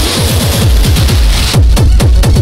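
Loud experimental electronic music: a rapid run of falling bass notes under harsh hissing noise. About one and a half seconds in, the noise drops away and a fast, stuttering beat takes over.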